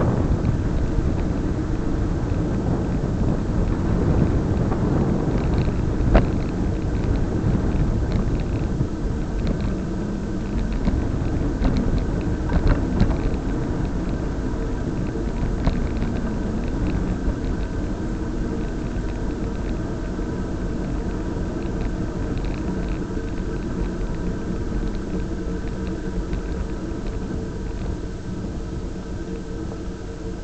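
Steady rumble of wind on the microphone and road noise from a camera travelling along a paved road, with a couple of brief knocks about six and thirteen seconds in.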